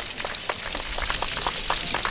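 Scattered sharp claps and wooden clacks over a steady hiss. This is audience applause mixed with the clack of the dancers' handheld naruko clappers.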